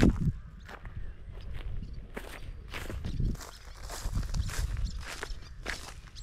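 Footsteps crunching and rustling over dry crop stubble and straw, about two steps a second, with a brief low rumble at the very start.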